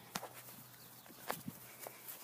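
Faint footsteps: a few separate, irregular steps.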